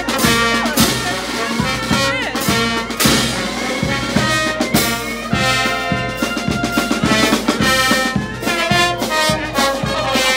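Brass band playing a parade march, trumpets and trombones carrying the tune over a steady drum beat.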